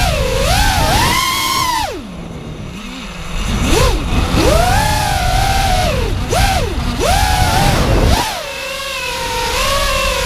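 Brushless motors of an FPV racing quadcopter (Scorpion 2204/2300 motors spinning DAL T5040 V2 three-blade props) whining, the pitch rising and falling with each throttle change. The pitch drops sharply about two seconds in and climbs back a second and a half later, dips again near seven seconds, and settles lower near the end. Wind rumbles on the onboard camera's microphone throughout.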